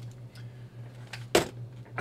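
A single sharp knock about a second and a half in, as something hard is put down or bumped on a workbench, with a few faint clicks before it. Under it runs a steady low hum.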